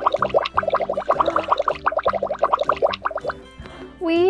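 Background music: a quick run of short, bright plucked-sounding notes, about eight a second, over low held notes. It stops a little past three seconds in.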